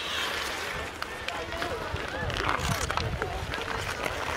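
Outdoor ice hockey in play: skate blades scraping the ice in short rushes and a few sharp clicks of sticks on the puck, with spectators chattering indistinctly and a low rumble of wind on the microphone.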